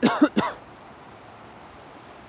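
A man coughing twice in quick succession, right at the start; then only a low, even background.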